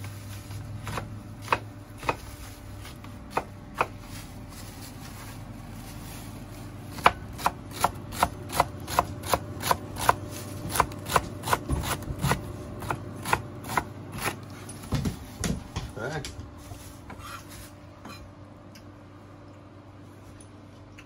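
Kitchen knife chopping celery on a wooden cutting board: sharp knocks, a few spaced ones at first, then a quick even run of about three a second, thinning out after the middle.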